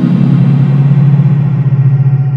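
Electronic music: a loud, low synthesizer tone finishes a downward pitch glide right at the start, then holds steady under an even, hissing wash of sound.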